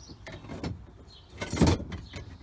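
A garden fork scraping and knocking against other tools as it is drawn out of a cluttered shed: a short scrape about half a second in, then a louder, longer one near the end.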